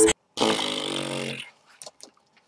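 A rap track stops abruptly. A moment later a man gives one drawn-out, breathy, groan-like vocal reaction of about a second, which fades away, followed by a couple of faint clicks.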